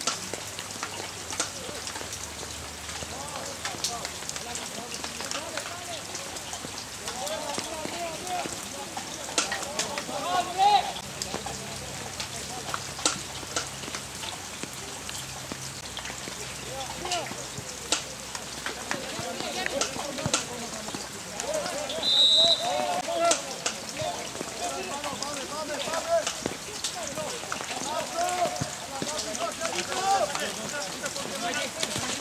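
Football match sound from the touchline: players calling and shouting across the pitch, with scattered sharp taps and thuds. A short referee's whistle blast sounds about two-thirds of the way through.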